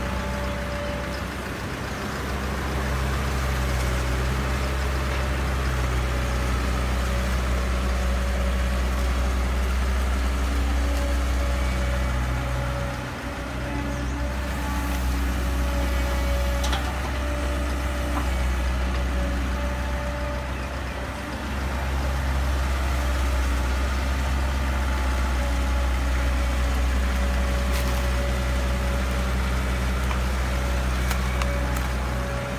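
Diesel engine of a Caterpillar E120B hydraulic excavator running steadily under load as it digs and loads soil into a dump truck. The engine note dips briefly twice, about 13 and 21 seconds in.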